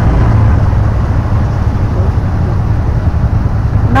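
Auto rickshaw's small engine running with road noise as it drives along, heard from inside the open passenger cabin as a steady low drone.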